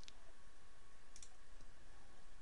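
Light clicks of a computer mouse: one right at the start and a quick double click about a second in, over a steady background hiss with a faint thin hum.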